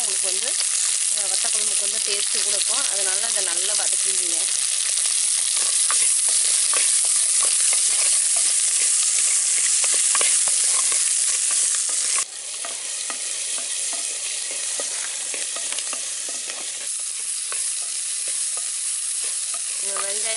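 Shallots and garlic frying in hot oil in a clay pot: a steady sizzle with fine crackling spatter, stirred with a ladle. The sizzle drops abruptly in level about twelve seconds in and carries on a little quieter.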